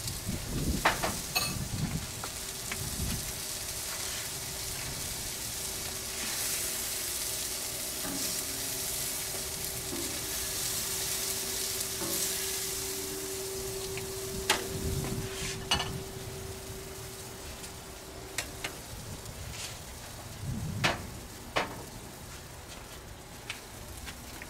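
Food sizzling on a flat-top griddle: a steady frying hiss with a few sharp clicks and knocks scattered through. A faint steady hum runs under it and stops about three-quarters of the way in.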